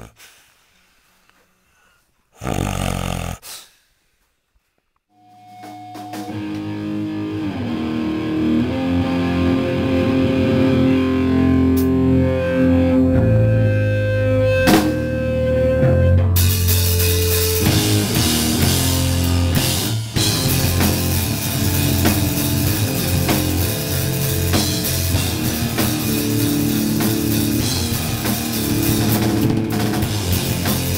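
A hardcore band playing live in a rehearsal room. Held, distorted bass guitar notes fade in about five seconds in, and the drums and the full band come in loud about halfway through. Near the start there is a brief loud noise.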